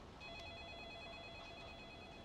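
A faint electronic tone made of several steady pitches, one of them warbling, held for about two seconds.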